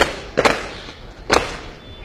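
Three hard boot stamps on pavement from guards performing a ceremonial parade drill, each a sharp crack with a short echo: one at the start, one about half a second later, and a third nearly a second after that.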